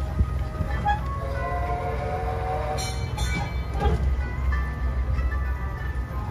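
Tourist road train running with a steady low engine rumble, while a melody plays over it.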